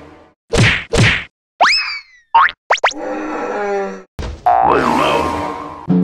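Cartoon sound effects: two quick whooshing whacks, a rising boing-like glide and two short hits, followed by longer pitched musical stings.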